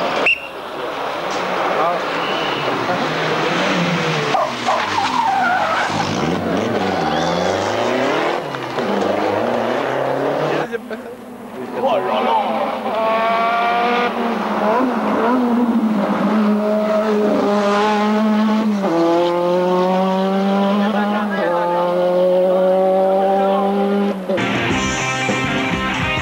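Rally car engines on a tarmac stage: one car revving hard through a bend, then, after a break about eleven seconds in, a second car accelerating toward the camera. On the second car the engine note climbs and drops back at each upshift, about three times.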